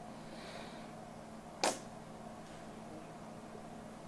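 Quiet room tone with a faint steady hum, broken once, about one and a half seconds in, by a single brief sharp click.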